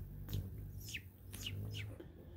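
A hummingbird gives about four short, high chip notes, each sweeping downward, spread over two seconds as it flies off the feeder.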